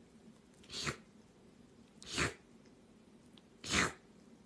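A pet sneezing three times, the sneezes about a second and a half apart.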